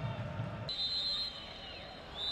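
Referee's whistle blowing one long, steady blast beginning under a second in and dipping slightly in pitch as it ends, with low stadium noise before it: the final whistle of the match.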